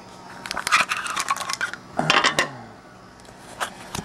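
Clear hard-plastic card holders and packaging handled by fingers: a quick run of clicks and scrapes, then a lone click near the end.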